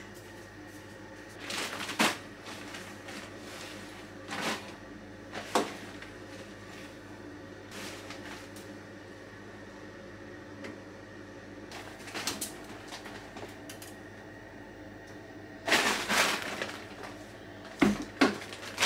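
Clothes being stuffed by hand into the drum of a front-loading washing machine. Scattered short rustles and knocks are heard, louder near the end as the door is handled, over a steady low hum.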